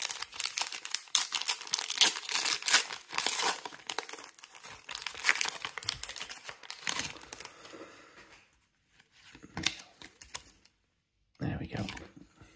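Foil wrapper of a Match Attax trading-card pack being torn open and crinkled in the hands: a dense run of crackles for about seven seconds, then only a couple of brief rustles.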